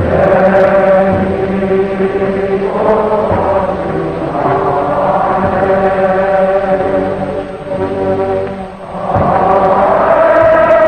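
Vocal music: voices holding long notes in phrases a few seconds long, with a short dip near the end.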